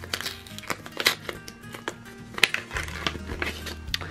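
Background music plays, with scattered light clicks and rustles from a paper pouch being handled and opened.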